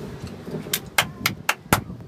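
Five sharp taps within about a second, over a low steady rumble.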